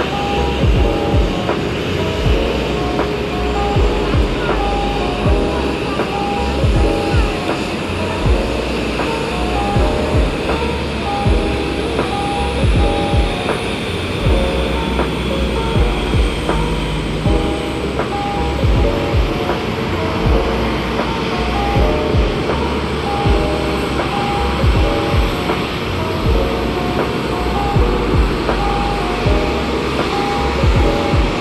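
Background music with a steady beat and a short repeating melody.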